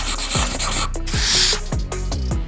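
Marker rubbing across a whiteboard as letters are written, in two scratchy stretches, the louder one about a second in. Background music with a deep bass beat runs underneath.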